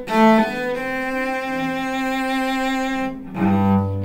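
A cello bowed at a slow practice tempo to show a tricky rhythm: a few short notes, then one long held note of over two seconds, then a lower note near the end.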